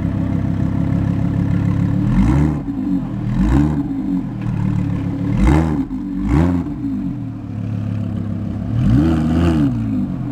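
Lamborghini Huracán's naturally aspirated V10 idling through its aftermarket exhaust, blipped five times: each rev climbs and falls back within about half a second, two close together early on, two in the middle and one near the end.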